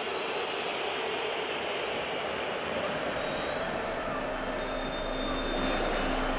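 Steady wash of stadium crowd noise, an even roar with no single voice standing out. About four seconds in, a low steady hum joins it.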